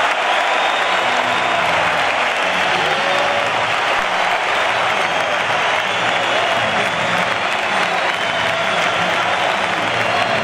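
Large arena crowd applauding steadily as a boxing result is given.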